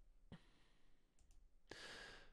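Near silence in a pause of speech: a single soft click about a third of a second in, then a man's quiet intake of breath near the end.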